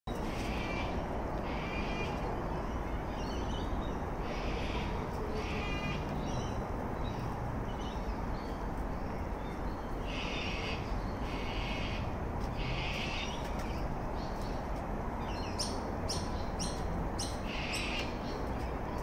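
Birds calling again and again, each call lasting under a second, over a steady background rush. Near the end the calls turn into a quick run of short, sharp chirps.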